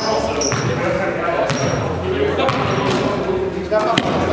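A basketball being dribbled on a gym floor, bouncing in short repeated thuds, amid the voices of players and spectators.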